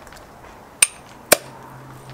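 A crown cap being pried off a glass beer bottle with a hand tool: two sharp metallic clicks about half a second apart, the second the louder, with a short ring.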